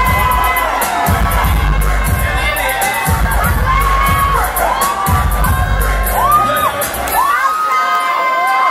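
Crowd cheering and screaming loudly over dance music with a heavy bass beat. The bass cuts out about seven seconds in, leaving the shrieks and cheers.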